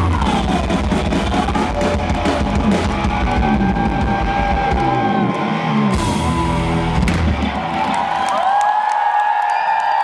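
Live rock band playing loudly: drums, bass and electric guitar. In the last two seconds the drums and bass drop away, leaving held notes, some sliding upward.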